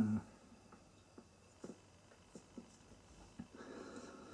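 A short low "hmm", then a mostly quiet small room with a handful of faint small clicks scattered through and a soft breathy sound near the end.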